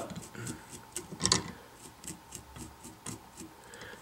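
A small brush raked repeatedly through the synthetic fibers of a fly's wrapped EP Tarantula Brush body, brushing them out so they stand up and none stay trapped: light, quick, scratchy ticks, with one louder stroke about a second in.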